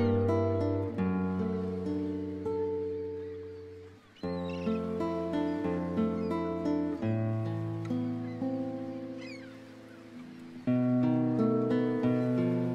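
Solo guitar playing a slow passacaglia: plucked notes and chords that ring and fade away. New phrases strike in about four seconds in and again near the end.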